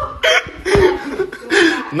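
Laughter in short, broken bursts.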